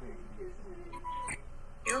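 A faint voice heard over a phone line, then a short beep about a second in and a click just after.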